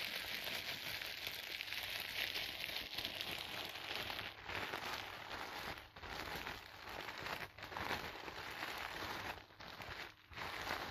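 Clear plastic wrapping crinkled and crumpled in the hands, a dense, continuous crackling broken by a few brief pauses in the second half.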